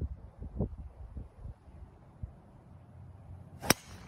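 Golf driver striking a teed ball: a single sharp crack of club on ball near the end.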